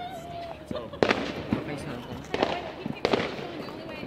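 Fireworks going off: a wavering tone fades out in the first half second. Then come sharp bangs about a second in and about three seconds in, with a smaller one between.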